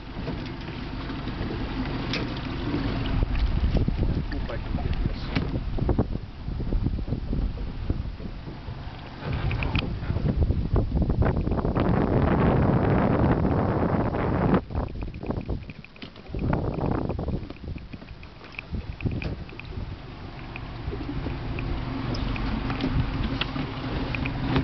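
Wind buffeting the microphone on an open boat, a low gusting rumble that rises and falls and briefly drops away a little past the middle, with scattered knocks of handling on deck.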